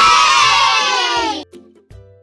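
A crowd of children cheering "yay!" together: one loud burst of many voices that falls slightly in pitch and stops suddenly about a second and a half in.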